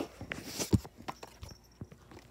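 A few scattered soft knocks and thumps from a phone being handled and moved about over carpet, with a faint thin high ringing about one and a half seconds in.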